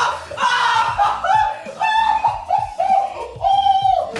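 Excited high-pitched yelling and screaming from young men, a run of short yells about every half second with a longer one near the end: celebrating a thrown playing card that has stuck in an apple.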